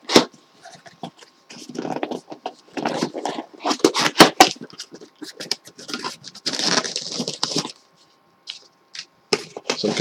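A taped cardboard shipping box being opened by hand: crackling and rustling of tape, cardboard and packing in two spells, with a couple of sharp clicks.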